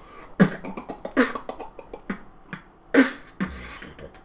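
A percussive beat of heavy low thumps that fall in pitch, four of them about a second apart and the loudest near the end, with smaller sharp hits between them.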